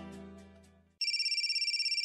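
A music bridge of plucked strings dies away. About a second in, a telephone starts ringing with a fast, high electronic trill.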